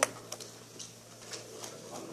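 A brief pause in speech in a large meeting room: faint room noise with a steady low hum and a few soft clicks.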